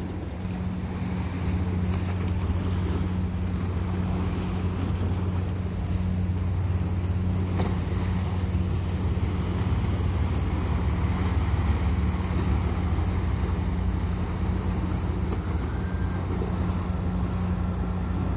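A small motor launch's engine running with a steady low hum as the boat manoeuvres close by and pulls away, with churning wake water and wind on the microphone.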